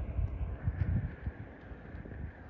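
Wind buffeting the microphone: irregular low rumbles and thumps over a faint steady hiss.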